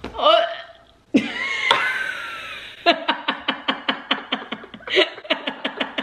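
A girl gives a short pained cry, then a longer breathy, strained cry while a burn blister on her finger is being drained. About halfway through this breaks into rapid laughter, about five bursts a second, from her and a woman.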